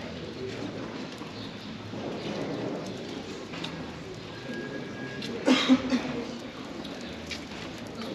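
A pigeon calling in a short run of low pulses about five and a half seconds in, the loudest sound, over the steady background noise of a pedestrian street.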